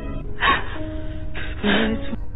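Slow background music with a woman's crying breaths over it: two sharp, sobbing gasps, a short one about half a second in and a longer, voiced one near the end.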